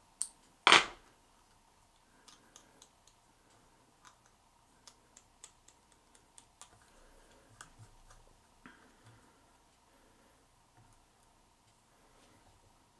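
Fly-tying handling sounds at the vise: a sharp knock just under a second in, then a scatter of light clicks and snips as thread, feathers and scissors are worked on the fly.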